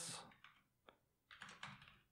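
Faint keystrokes on a computer keyboard: a single one about a second in, then a quick run of several near the end as a short line of code is typed.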